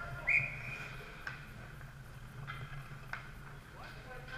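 A referee's whistle blown once: a short, steady, high-pitched blast of about half a second. A few sharp knocks follow over the next few seconds against the rink's background hum.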